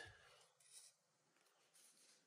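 Near silence: quiet room tone, with one faint, brief handling sound a little over half a second in.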